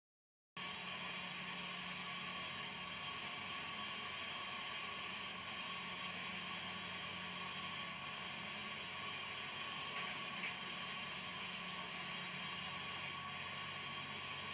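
Steady hiss and hum of an old videotape playing through a TV, starting abruptly about half a second in.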